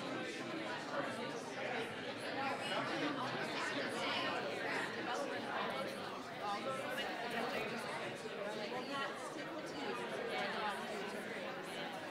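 Indistinct chatter of many people talking at once, a room full of attendees conversing, steady throughout with no single voice standing out.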